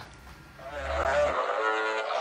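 A brief lull, then from about half a second in a held, wavering pitched sound with a low hum beneath it for about a second, the opening of the animated outro's sound.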